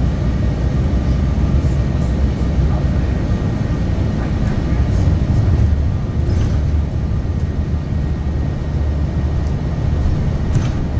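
Cabin noise inside a New Flyer Xcelsior XDE60 diesel-electric hybrid articulated bus travelling at speed: a steady low drone of the drivetrain with road noise.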